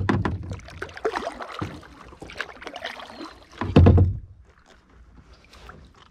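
Pelican kayak drifting on a river: water splashing and dripping against the hull, with two loud knocks on the hull, one at the start and one about four seconds in.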